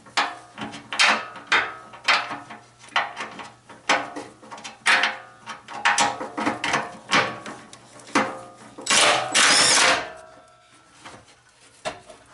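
Cordless impact driver with an impact socket run in short bursts on a bumper-beam bolt, among irregular metallic clanks that ring on. A longer, louder run comes about nine seconds in, then it quietens.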